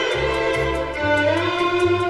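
Easy-listening orchestral recording from a 1959 LP: strings carry a smooth melody with one note gliding upward about a second in, over a bass line of short repeated notes and light percussion ticking in a steady rhythm.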